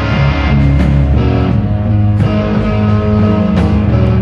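Live rock band playing an instrumental passage: electric guitars over drums, with no singing.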